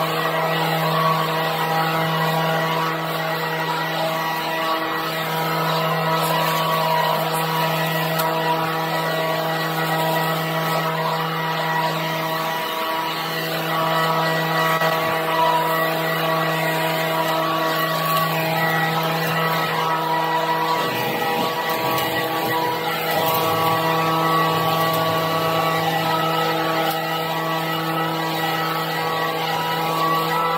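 Leaf blower running steadily at high speed, blowing leaves and grass clippings along a concrete path, with an unchanging engine pitch.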